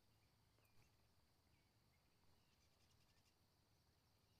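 Near silence: faint outdoor room tone with a few very faint, short high chirps.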